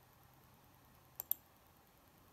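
Two quick computer mouse clicks about a tenth of a second apart, a little past a second in, the second one louder, submitting a market order on a trading platform.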